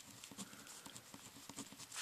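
Faint scratching and tapping of a pen writing on paper, in short irregular strokes.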